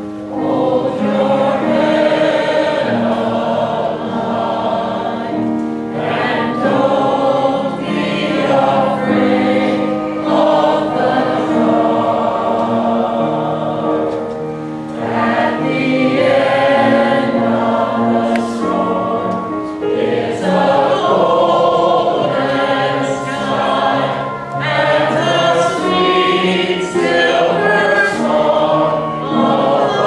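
Mixed choir of men and women singing together in sustained, flowing phrases.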